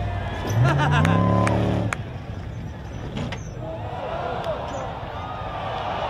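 Sand rail's engine revving hard, rising in pitch about half a second in and cutting off sharply near two seconds. After that, crowd voices and shouts over a lower rumble.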